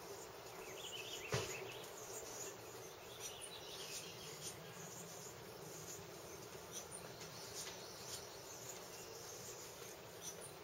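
Faint outdoor yard ambience: a steady background of insect sounds with a few brief higher chirps, and one sharp click about a second and a half in.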